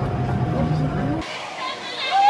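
Steel roller coaster train rumbling along its track. About a second in, the sound cuts abruptly to quieter outdoor ambience with voices.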